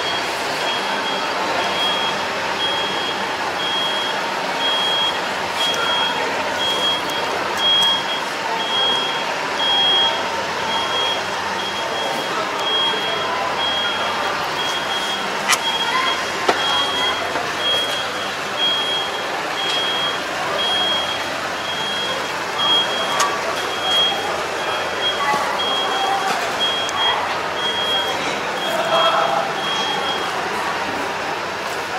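A high electronic warning beeper sounding about once a second, steady in pitch, like a machine's reversing alarm, over a constant crowd hubbub with distant voices. A sharp click or two stands out about halfway through.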